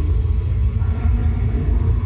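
A loud, steady deep rumble with faint muffled tones above it.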